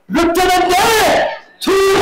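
An actor's loud, drawn-out stage cry through a microphone: one long held call that bends upward in pitch near its end and breaks off. After a short pause, another loud held vocal note begins just before the end.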